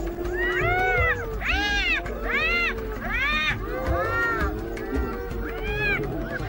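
Spotted hyenas giggling and squealing: a run of high calls, each rising and falling in pitch, about one a second, over a lower drawn-out groaning tone.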